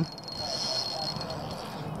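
A fishing reel running under load as a hooked fish is fought on a bent rod: a thin, steady high whir that fades out about a second in.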